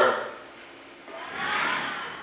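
A flute giving a short, breathy sound that swells and fades about a second in, mostly air.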